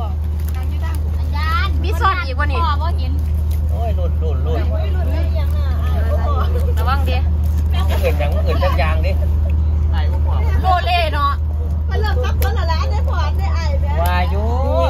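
People talking over a loud, steady low rumble.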